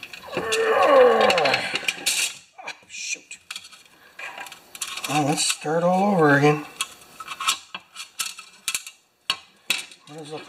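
Sharp metallic clicks and clinks of a coiled steel rewind spring being bent and fitted by hand into a plastic recoil starter housing. A man's long wordless vocal sounds come near the start and again about five to six and a half seconds in, louder than the clicks.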